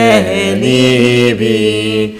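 A man chanting Hebrew prayer, holding long drawn-out notes. The voice slides down in pitch as it starts and dips again about a second and a half in.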